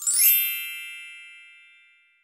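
A single bright chime sound effect with a brief high sparkle at the start, ringing and fading away over about two seconds.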